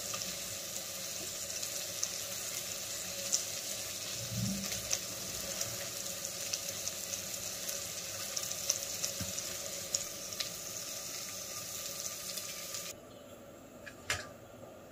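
Chopped vegetables and spices frying in oil in a pressure-cooker pot: a steady sizzle with scattered small crackles, cutting off suddenly about a second before the end.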